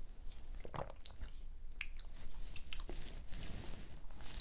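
Small wet mouth sounds of wine tasting: faint smacks and clicks as a sip of white wine is worked around the mouth and swallowed. A stemless wine glass is set down on a wooden table.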